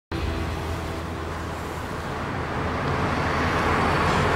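A taxi driving up and passing close on a street, its engine and tyre noise growing louder through the last couple of seconds.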